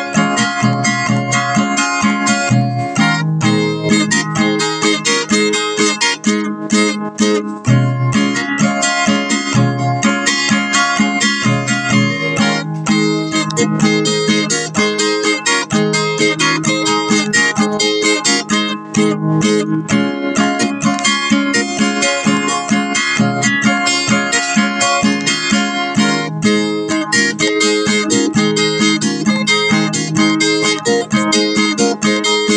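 Background music on acoustic guitar, a continuous run of plucked and strummed notes.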